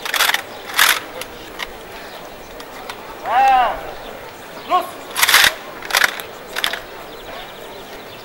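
Drawn-out shouted drill commands, one long call about three and a half seconds in and a short one a second later, giving the orders for a rifle salute to a line of Schützen with muzzle-loading rifles at the ready. Several short, sharp rattling noises come before and after the calls.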